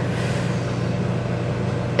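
Steady low hum with a hiss over it: constant background room noise.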